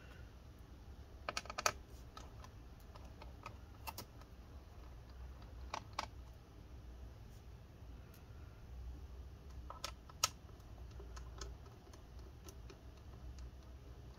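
Faint, scattered light clicks and taps as small screws are backed out of a laptop's bottom cover with a precision screwdriver and set down on the desk, over a faint steady low hum.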